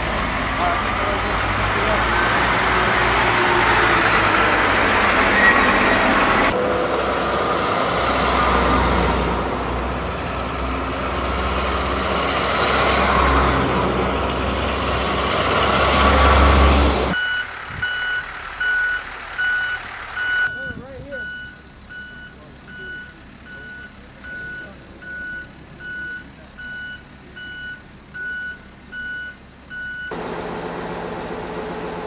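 Heavy military trucks driving past in convoy, engines and tyre noise, with the rumble swelling as a truck comes close. About halfway through this stops abruptly and a truck's reversing alarm beeps about once a second.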